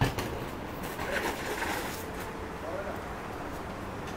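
A BMX bike hits the ground with one sharp knock at the start, then rattles with many small clicks as it rolls over cobblestones.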